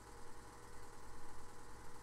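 Steady low hum with a faint even hiss: the background noise of the recording.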